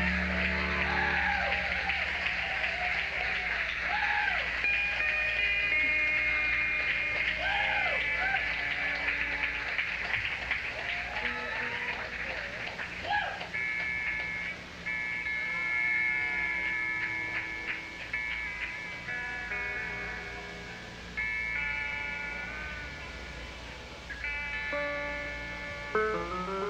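Live band on a soundboard recording: a held bass note dies away about a second in, and the crowd cheers and whoops for several seconds. Then steady guitar and keyboard notes are played quietly, noodling and tuning between songs.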